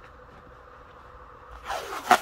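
Blue painter's masking tape being pulled off its roll: a rising ripping rasp near the end, after a second and a half of faint background hiss.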